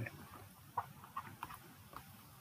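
A few faint, short ticks of a stylus tapping on a pen tablet during handwriting, over low hiss.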